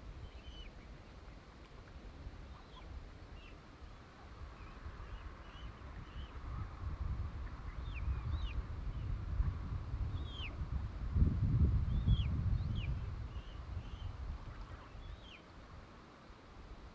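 Scattered short, high, down-slurred bird chirps, a dozen or so, over a low rumbling noise that swells and is loudest about eleven seconds in.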